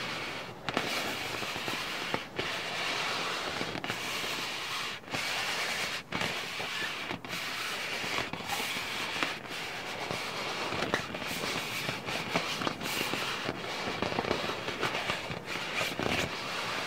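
Crackly scratching and rubbing on a ball's surface, continuous but broken into strokes with a short pause about once a second.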